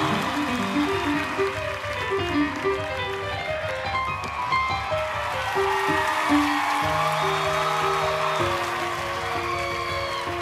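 Live stage music with a piano playing quick runs of short notes, moving on to longer held notes with a low sustained bass tone.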